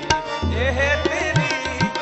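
Gurbani kirtan: a sung melody over two Nagi hand-pumped harmoniums holding steady reed drones, with tabla. The bass drum of the tabla plays low strokes that bend up in pitch, and the small drum plays sharp strokes.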